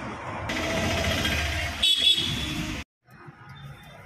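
Busy street traffic noise with a short vehicle horn honk about two seconds in. The sound cuts off abruptly just before three seconds, and quieter street background follows.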